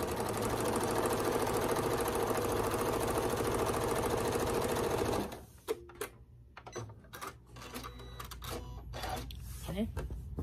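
Domestic sewing machine running steadily, stitching a quarter-inch seam through layered quilting cotton, then stopping about five seconds in. A few scattered clicks and handling noises follow.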